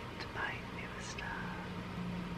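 Air purifier fan running with a steady hum, with soft whispered speech over it.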